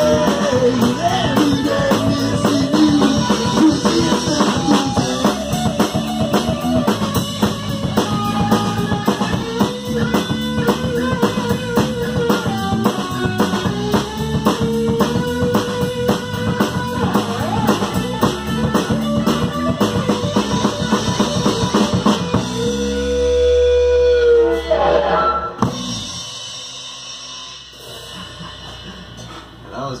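A rock band playing live in a small room, with drum kit and guitar. Near the end the song stops on a held chord that rings out and fades.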